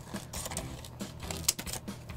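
Scissors cutting through the edge of a plastic laminating film pouch: a run of short, crisp clicks.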